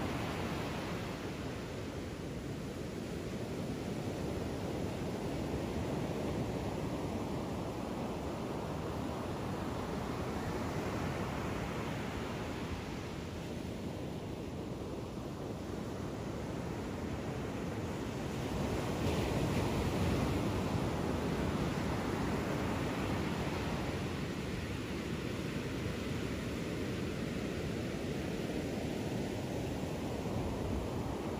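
Ocean surf breaking and washing up a sandy beach: a steady rush that swells and eases, loudest about twenty seconds in.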